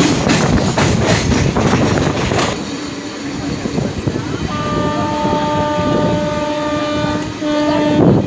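Godavari Express train on the move: wheels clattering over the rails, easing off after about two and a half seconds. From about four and a half seconds a long, steady train horn note sounds to the end.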